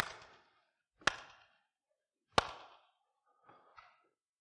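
Two sharp handclaps about a second and a third apart, each followed by a short echo in the hall. They imitate the clack of an old train's wheels hitting the rail joints.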